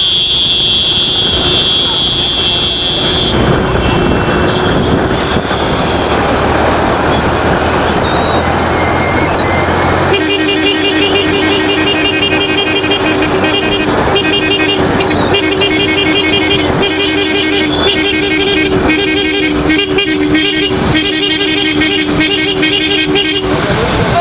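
A vehicle horn sounds as one continuous two-tone blare from about ten seconds in and holds almost to the end, over engine and wind noise. In the first few seconds a high, steady tone sounds instead.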